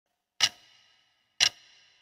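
Two sharp ticks about a second apart, each ringing briefly after the click, in a steady once-a-second rhythm.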